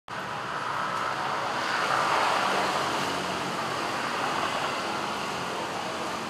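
Steady road traffic noise: a continuous rush of passing vehicles, swelling a little about two seconds in.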